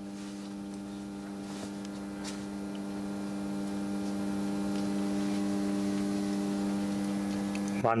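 Steady mains hum from the powered meter-testing rig under load: a low tone with a ladder of evenly spaced overtones, growing slowly louder.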